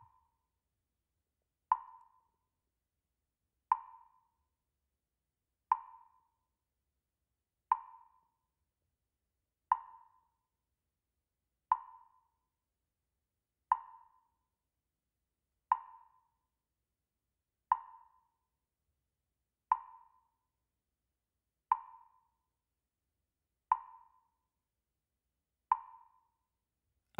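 A short, single-pitched tick repeating steadily about every two seconds, thirteen ticks in all, with silence between: a timing beat for silently repeating a meditation mantra.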